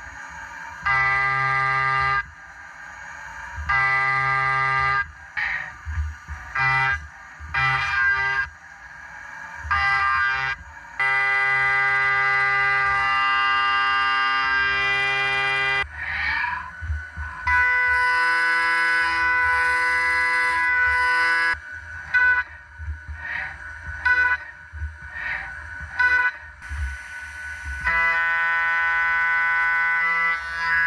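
Haas CNC mill slotting with a one-inch end mill under flood coolant: a loud, steady high-pitched cutting tone that starts and stops in passes of one to two seconds as the tool goes in and out of the cut. About sixteen seconds in the tone shifts to a different pitch.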